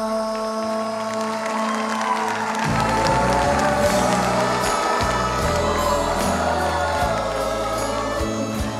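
Live sertanejo band music, with accordion and acoustic guitar, holding a chord, then the bass and beat coming in about three seconds in. A studio audience sings along as a crowd and claps in time.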